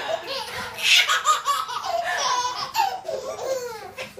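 Four babies laughing together in several high-pitched bursts of giggles.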